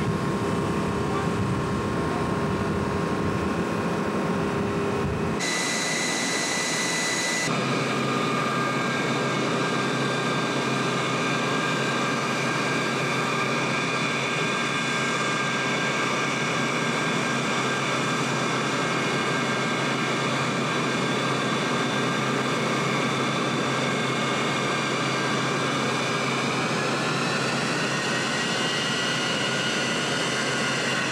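Steady jet turbine noise with a whine of several high tones. The sound changes abruptly twice, about five and about seven and a half seconds in. Near the end the tones rise in pitch, as if the engine is spooling up.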